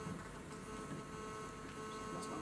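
Quiet hall with a faint steady electrical hum and a thin high whine.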